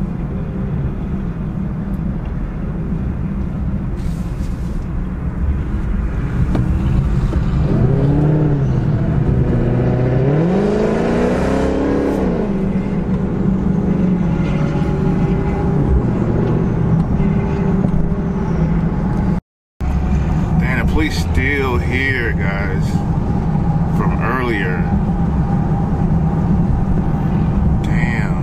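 Steady low engine and road drone heard inside a car driving in freeway traffic, with a pitched sound that rises and falls about eight to thirteen seconds in. Voice-like sounds come and go in the second half, after a brief drop-out of all sound.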